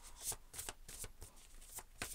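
A deck of tarot cards being shuffled by hand, with short papery rustles and slaps about three times a second.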